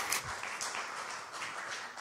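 Audience applause, the clapping thinning out and fading.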